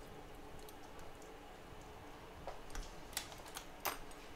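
A few light, sharp clicks and taps of an iPhone's casing and small repair tools being handled during disassembly, bunched in the second half, over a faint steady room hum.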